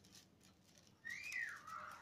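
A faint single whistle-like note about a second in, rising briefly and then sliding down in pitch, lasting under a second.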